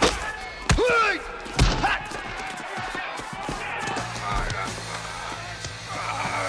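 Movie fight sound effects: three heavy hits in the first two seconds, the second followed by a pained cry, over background music.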